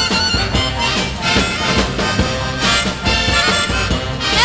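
Live soul band playing with a steady beat, a harmonica carrying the lead melody.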